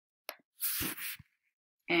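A single computer keyboard click, then a short breath, with silence after it.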